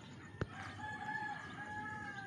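A rooster crowing faintly, one long drawn-out crow beginning about half a second in, just after a single sharp click.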